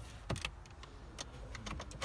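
A scattering of light clicks and taps, several in quick succession, from a hand touching and handling the trim of a car's centre console.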